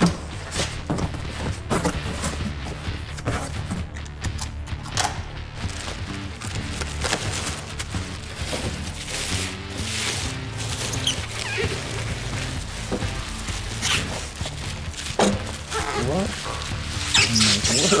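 Background music playing under the rustle and crackle of a cardboard box being unpacked, with the flaps torn open and hands digging through packing peanuts and bubble wrap.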